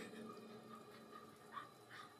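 Drum kit's final hits ringing out and fading into near silence, with a couple of faint light taps near the end.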